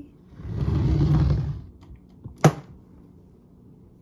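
A metal-trimmed storage trunk being turned on a wooden floor: a scraping rumble lasting about a second, then a single sharp knock about two and a half seconds in.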